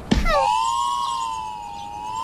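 A sharp hit, then a long whistle-like electronic tone that wavers gently in pitch: a comic sound effect as the hanging ball is struck.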